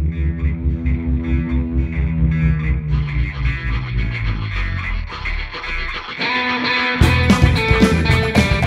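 Electric blues band opening a song: a pulsing electric guitar riff over bass, with the drums and full band coming in louder about seven seconds in.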